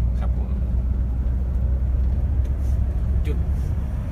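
Steady low rumble of a Mercedes-Benz intercity tour bus cruising on the highway, engine and road noise heard from inside the cabin.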